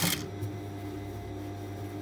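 Steady low hum of an industrial sewing machine's motor idling while the machine is not stitching, with a brief rustle of fabric being handled at the start.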